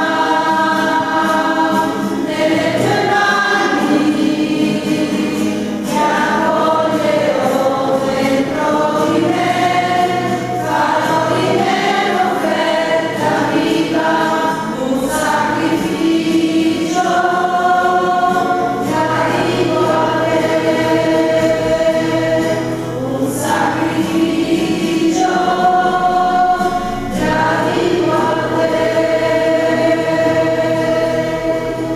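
Church choir singing a slow communion hymn at Mass, in long held notes that change every second or two.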